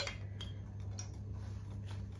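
A spoon clicking lightly against a glass spice jar, one sharper click at the start and a few faint ticks after, over a steady low hum.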